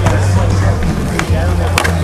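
Skateboard on concrete: a sharp clack right at the start, another about a second in and a third near the end, as the board pops and lands on the ledge.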